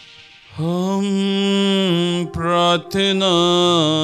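A man's voice chanting on a held reciting tone, as in a priest's sung prayer at Mass. It starts about half a second in and breaks briefly twice. A low steady note comes in under the voice in the second half.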